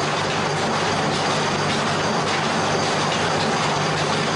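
Loud, steady machine noise with a low electrical hum under it, starting and stopping abruptly: the running equipment of a plant tissue-culture growing room.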